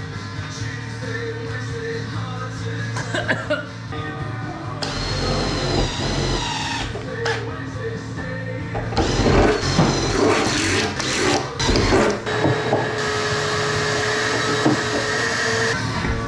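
Cordless drill boring holes in a steel fuel tank: the motor whines up about a third of the way in, then runs in bursts of cutting noise through the second half, ending in a steady whine. Background music plays underneath.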